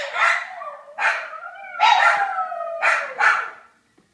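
Havanese dogs howling, a drawn-out cry that slides slowly down in pitch, broken by about five sharp barks. It is the protest of dogs left behind when their owner goes upstairs without them.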